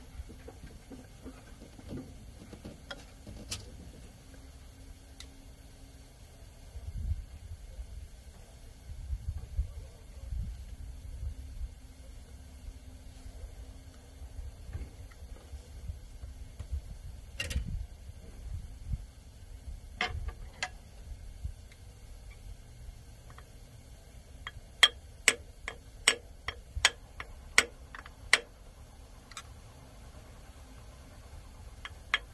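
Hand tools, a screwdriver and a wrench, clicking and tapping against metal parts on top of an open diesel engine: scattered single clicks, a low rumble about a quarter of the way in, then a quick run of about eight sharp taps, roughly three a second, near the end.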